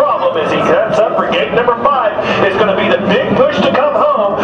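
A man's voice talking indistinctly all through, over a steady low drone.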